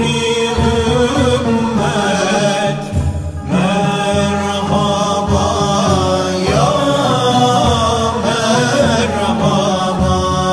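Male voices chanting a naat, an Ottoman Turkish devotional hymn in makam Hüzzam, in long ornamented phrases over a steady low held note. There is a short break about three seconds in before the next phrase begins.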